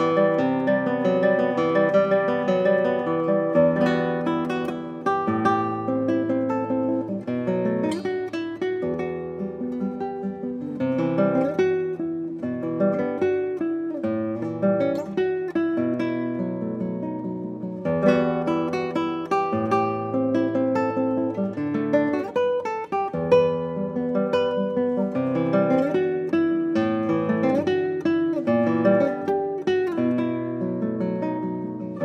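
Solo nylon-string classical guitar, fingerpicked: a melody of plucked notes over bass notes, with short pauses in the flow about 4, 18 and 23 seconds in.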